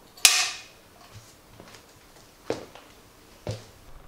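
Film clapperboard clapped shut once: a single loud, sharp clack about a quarter second in, marking the start of a take. Two softer clicks follow about a second apart near the end.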